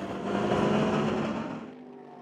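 Racing car engine passing by, swelling over the first second and a half and then fading away.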